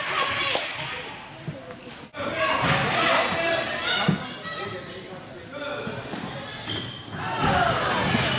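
Soccer ball kicked and thudding in a large indoor arena, one sharp impact about four seconds in standing out over the voices of players and spectators. The sound cuts out for an instant about two seconds in.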